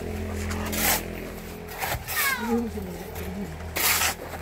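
Loud gritty crunches repeating about every one and a half seconds, a long wooden pole being jabbed into gravelly ground. About two seconds in, a cat gives one short falling meow.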